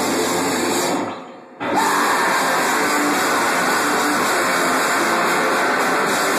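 Loud, dense wall of distorted electric guitar noise and drums from a rock band playing live in a small room. It drops out abruptly for about half a second just after a second in, then comes back at full level.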